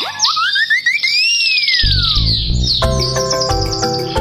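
Cartoon intro sound effects: quick rising whistle-like glides, then a long swooping tone that rises and falls. About two seconds in, an upbeat jingle with bass and chords starts.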